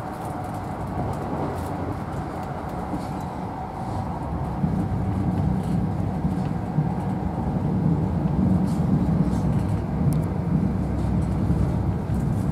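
Running noise of an InterCity 125 (Class 43 HST) train heard from inside its Mark 3 passenger coach at speed: a steady deep rumble of wheels on the track with faint scattered clicks. It grows louder about four seconds in.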